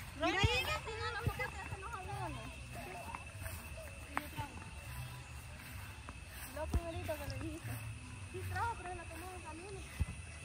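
Voices talking away from the microphone, with a few sharp knocks and a faint steady high tone throughout.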